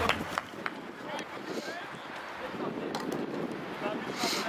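Rugby players' faint calls and shouts across the field, with a few sharp clicks and light wind on the microphone.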